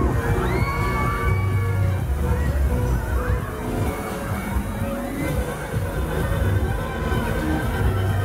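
Riders screaming and shrieking on a spinning fairground thrill ride, over loud fairground music with a heavy bass beat.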